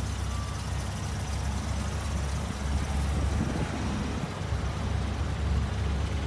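GMC pickup truck's engine idling: a steady low rumble that swells slightly around the middle and again near the end.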